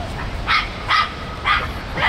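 Small dog barking: three short barks about half a second apart, with another beginning at the very end.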